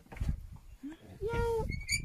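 Cheetah calling at close range: a short held call past the middle, then a high, thin chirp near the end.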